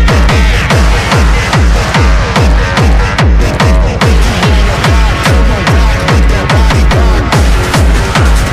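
Techno from a DJ mix: a loud, steady, fast kick drum beat of about two kicks a second, with percussion and synths layered over it.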